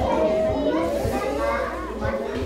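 Indistinct chatter of several overlapping voices, children's among them, with no single speaker standing out.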